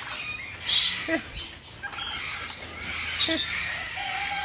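Two short bird calls, one near the start and one near the end, among the noise of the aviary.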